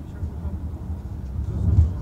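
Car cabin road and engine noise while driving: a steady low rumble that swells briefly louder near the end.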